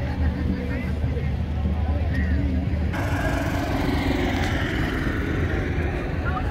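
Street parade ambience: a minivan's engine running close by at walking pace, with a low steady rumble and voices around it. About three seconds in the sound changes abruptly to a more open mix of crowd voices and vehicle noise.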